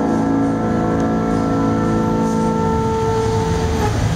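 A band's instruments holding one long, steady A note together, which stops just before the end, with lower parts moving underneath.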